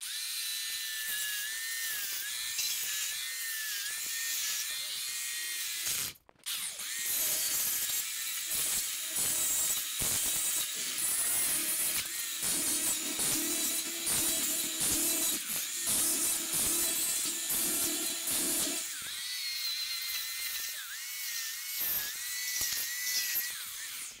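Corded electric chainsaw running and cutting through the expanded polystyrene foam of an insulated concrete form wall: a steady high motor whine whose pitch dips briefly now and then as the chain bites, with a short stop about six seconds in.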